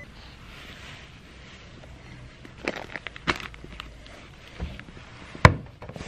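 Handling noise while a baby is being changed: soft rustle of clothing and a disposable diaper, with a few sharp clicks and knocks, the loudest about five and a half seconds in.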